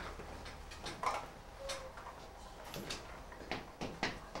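A few faint, scattered clicks and light knocks, with a brief faint tone about halfway through.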